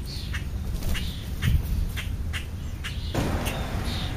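Birds calling at a feeding spot in short, sharp chirps that come irregularly, a couple each second, over a steady low rumble of wind on the microphone. A brief rustle comes about three seconds in.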